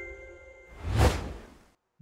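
Logo-sting sound effects: the last chime notes ring on and fade, then a whoosh swells to a peak about a second in and dies away.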